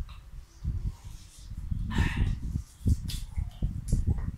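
Close-up eating sounds of people chewing and biting into fried chicken, with irregular smacking and a few brief sharper crunches.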